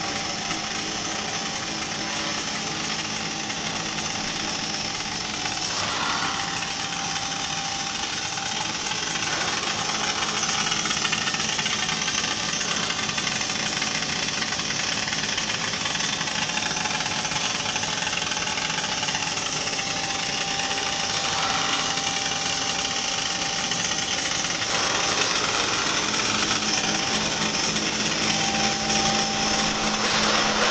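High-frequency welded pipe mill running: a steady, loud mechanical noise with a hiss and a few constant tones. It grows a little louder about ten seconds in and again near the end.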